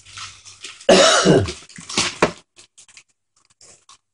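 A short, loud vocal sound that slides down in pitch about a second in, followed by a couple of shorter sharp bursts, with gift-wrap paper rustling around it.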